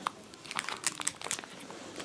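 Small plastic packet crinkling as it is handled, an irregular scatter of light crackles.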